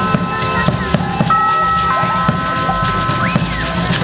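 Traditional dance music: a simple melody of long held high notes over a steady drum beat.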